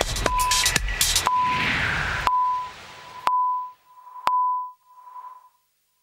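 Electronic TV news theme music ending: a beat of sharp hits and short high beeps, then a whoosh, then two final hits about a second apart whose beep tone rings on and echoes away to nothing.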